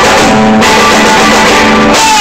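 Live rock band playing loud, with electric guitar and drums, recorded close to the stage at a very high level.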